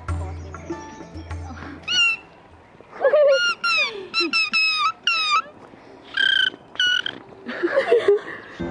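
High-pitched squealing, giggling laughter from women, in quick runs of rising and falling squeaks with a couple of longer held squeals. Plucked-string folk music fades out in the first second or two.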